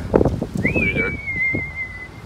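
A single whistled note, about a second and a half long: it rises quickly, then slides slowly down in pitch with a slight waver.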